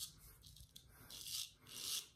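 Straight razor scraping through lathered stubble: a few short, faint, crisp rasping strokes, the longest in the second half.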